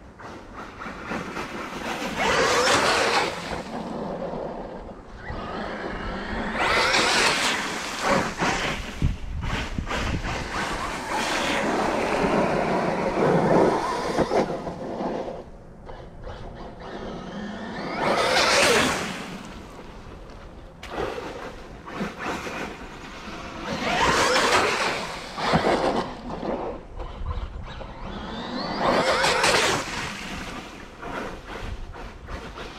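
Battery-electric Traxxas Maxx RC monster truck making repeated high-speed passes through slush and a large puddle. Each pass brings a surge of motor whine and the hiss and splash of water spray, several times over with quieter gaps between.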